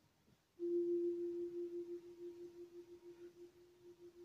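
A single ringing tone that starts suddenly about half a second in and slowly fades with a slight pulse.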